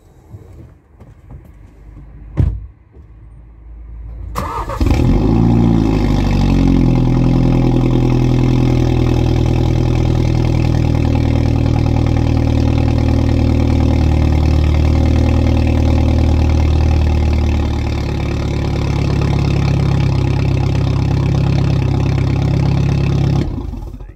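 Mini F56's turbocharged four-cylinder engine starting about four seconds in, revving briefly and then settling to a steady, loud idle through an exhaust whose valve is unplugged and held permanently open; it is switched off shortly before the end. A single thump comes a couple of seconds before the start.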